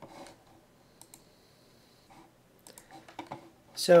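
A few faint, scattered clicks over quiet room tone, then a man's voice begins near the end.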